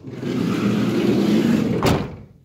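The side sliding door of a Mercedes-Benz Sprinter van rolling along its track for about two seconds, then shutting with one loud slam as it latches near the end.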